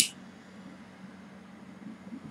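A single sharp click as a torch lighter is sparked to light a cigar, then only a faint low steady hum of room noise.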